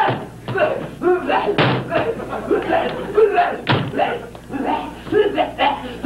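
Two loud thumps, about one and a half and three and a half seconds in, amid wordless, mumbling voice sounds and laughter.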